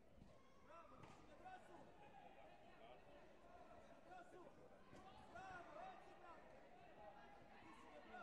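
Faint, distant voices of people calling and talking, with a few soft thumps.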